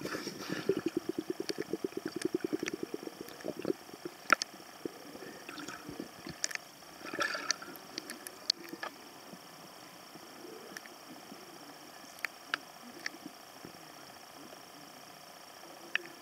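Underwater sound in a pool: scuba exhaust bubbles gurgling in a rapid run for the first few seconds, then a quieter stretch with scattered clicks and another short burst of bubbling about seven seconds in.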